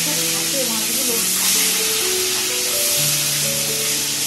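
Food frying in a pan on a gas stove, a steady sizzle, under background music of long held notes.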